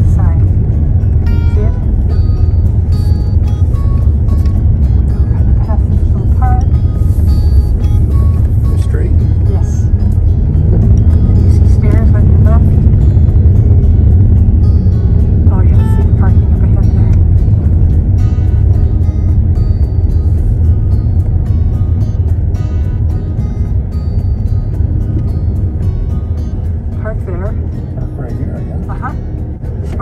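Car driving slowly over cobblestone streets, a steady low rumble from the tyres and engine heard from inside the cabin, easing off somewhat near the end.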